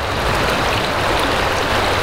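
A shallow river at low flow running steadily over gravel and rocks, a continuous even rushing of water.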